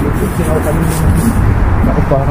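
Wind buffeting the microphone, a loud low rumble, with faint talking underneath.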